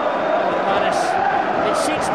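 Football stadium crowd noise, steady and continuous, under a TV commentator's voice.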